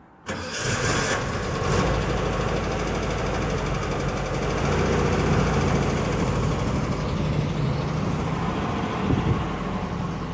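Volkswagen Bay Window bus's air-cooled flat-four engine cranking and catching just after the start, then running steadily at idle.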